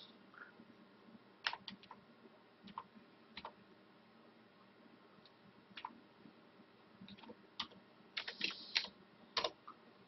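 Computer keyboard being typed on: scattered single keystrokes, then a quicker run of several keys near the end, as a password is entered to unlock the screensaver.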